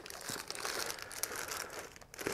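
A soft pouch and the tools inside it rustling and crinkling as they are handled, a steady run of small irregular crackles.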